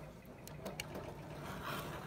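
Faint handling sounds: a few small ticks, then a soft scraping near the end as a rotary cutter blade begins rolling through the fabric corner along the edge of an acrylic ruler.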